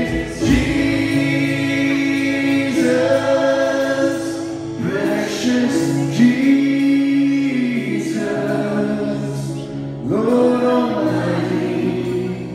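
Live church worship band: men singing a slow worship song at microphones with instrumental backing, in long held phrases that break every few seconds.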